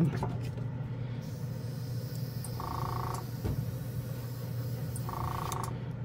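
Small piston airbrush compressor humming steadily while an airbrush sprays with its MAC valve turned down low: a faint hiss of air starts about a second in and runs until near the end, with barely any air coming through. Two short higher-pitched tones sound midway and near the end.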